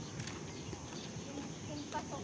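Footsteps of several people walking on an asphalt road, sandals and shoes slapping the surface, with faint voices in the background.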